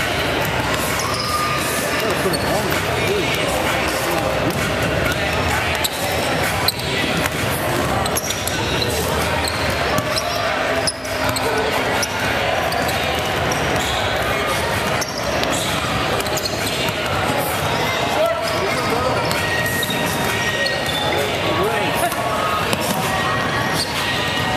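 Basketballs bouncing on a hardwood gym floor amid steady chatter of players and onlookers, echoing in a large gymnasium.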